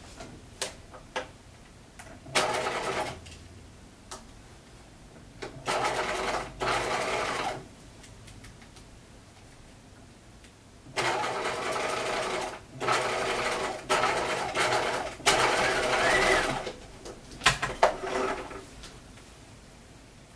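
Bernina electric sewing machine stitching through folded layers of fabric in short runs of one to two seconds, stopping and starting several times with pauses between. A few sharp clicks come near the end.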